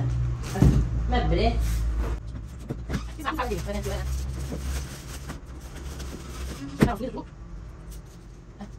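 Clear plastic laundry bags full of clothes rustling and crinkling as they are lifted off a bed and carried away, with short interjections of a woman's voice.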